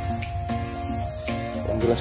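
A steady, high-pitched insect drone over background music of held tones that step in pitch. A voice starts near the end.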